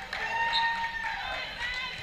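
Indoor volleyball rally: athletic shoes squeaking on the court, one long squeal that slides down in pitch about a second in, then several short chirps, mixed with players' voices.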